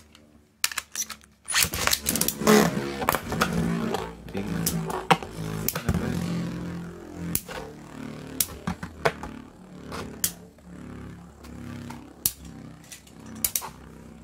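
Two Metal Fight Beyblade tops, L-Drago Destroy and Fang Pegasus, spinning in a plastic stadium: a whirring hum, louder from about a second and a half in, with many sharp clacks as the tops collide.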